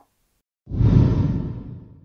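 A whoosh transition sound effect between news segments. It comes in about 0.7 s after a short silence, swells quickly with a deep low end, then fades out over about a second.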